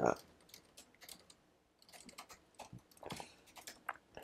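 Typing on a computer keyboard: quick runs of key clicks with short pauses between them, as text is entered into form fields.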